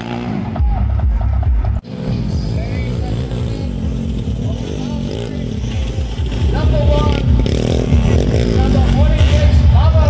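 Dirt bike engines revving as the bikes race past on a dirt track, mixed with people shouting and an electronic music track with a steady beat. Sound drops out briefly just before two seconds in.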